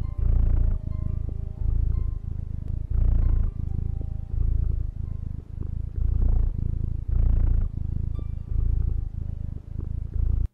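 Low cat-like purring, contented, as its ears are stroked, rising and falling in cycles of about one a second with some cycles louder than others. Soft background music plays under it.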